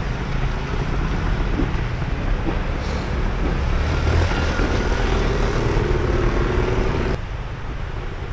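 A trials motorcycle engine running while the bike rides a woodland section, its note rising a little past the middle. The sound drops suddenly near the end.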